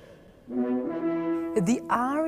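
Opera orchestra holding sustained, steady brass notes, starting about half a second in after a brief pause. A woman's voice starts speaking over the music near the end.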